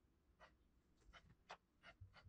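Fingers rubbing and pressing oil-based sculpting clay on a bust's ear: about six faint, short, scratchy strokes, the strongest about a second and a half in.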